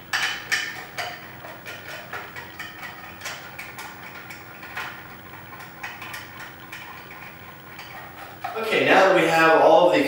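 Screwdriver turning a screw into the plastic top of a Hiblow HP80 diaphragm air pump, a run of small irregular clicks over a faint steady hum. A man's voice comes in near the end.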